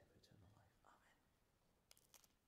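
Near silence: a faint whispered voice in the first second, then a faint click near the end.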